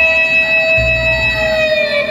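Loud DJ music over a sound system: a held, siren-like synth tone slowly sliding down in pitch, with a stretch of heavy bass about a second in.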